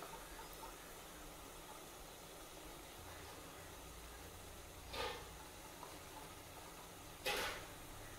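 Quiet room tone with two short, soft rustling swishes, about five seconds in and again near the end: grated coconut being spread by hand over ragi vermicelli on a cloth-lined steamer plate.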